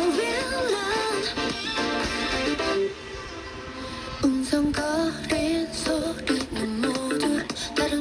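A pop song with a singer, played over FM broadcast through a small portable radio's speaker. It sounds thin, with little bass, and has a softer passage about three seconds in.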